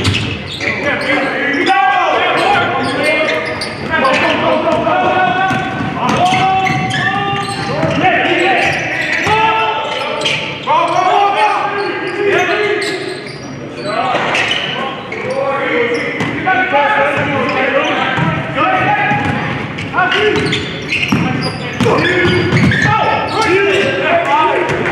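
Basketball dribbled and bouncing on a hardwood gym floor during live play, with voices of players and spectators calling out throughout, echoing in the gym.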